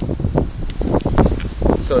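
Wind buffeting the microphone: a loud, gusty low rumble that rises and falls. A man's voice starts a word near the end.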